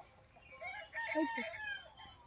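A rooster crowing once, one call starting about half a second in and lasting just over a second.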